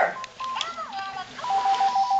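Electronic Elmo toy phone sounding: a few short electronic tones, then, about one and a half seconds in, a warbling two-tone ring that rapidly alternates between two pitches.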